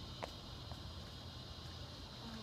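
Steady, high-pitched chorus of insects on a summer evening over a low background rumble, with one short, sharp chirp about a quarter second in.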